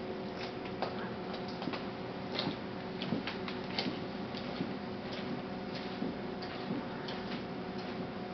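Steady low electrical hum with irregular light clicks and taps scattered through it.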